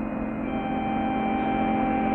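A steady low hum with several held tones over it; a higher held note comes in about half a second in.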